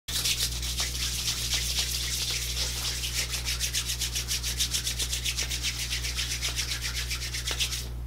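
Hands rubbed briskly together as if shaking dice, a rhythmic scratchy rubbing of about eight strokes a second that stops just before the end.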